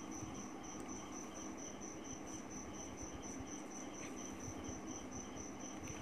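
A faint, high-pitched chirp pulsing evenly about four times a second, like an insect calling, over a faint steady low hum.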